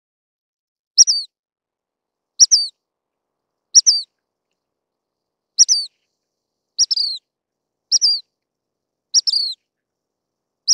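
Dark-sided flycatcher calling: seven short, high notes, each dropping in pitch, repeated every one to two seconds.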